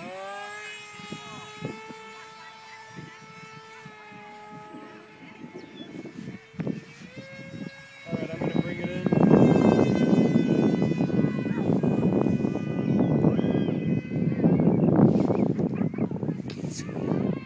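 High-pitched whine of an RC foam jet's MegaJet brushless electric motor and propeller, rising in pitch as the plane makes a low pass and then holding steady as it climbs away. From about halfway in, loud wind rumble on the microphone drowns most of it out, with the whine still faintly under it until near the end.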